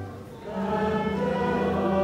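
Choir singing slow, sustained chords; one chord fades at the start and a new one swells in about half a second in.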